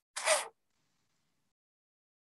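A single brief rush of noise, about half a second long, just after the start.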